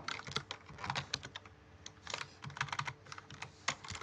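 Typing on a computer keyboard: irregular runs of key clicks, with a brief pause near the middle.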